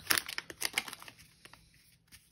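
Torn plastic wrapper of a baseball card hanger pack crinkling as it is handled, a quick run of crackles that fades away after about a second.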